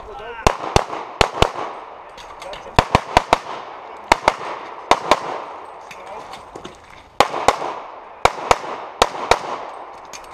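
Handgun shots fired in quick pairs, about a dozen pairs in all, each shot sharp with a short echo after it; the firing pauses for about a second and a half past the middle while the shooter moves to the next position, then resumes in pairs.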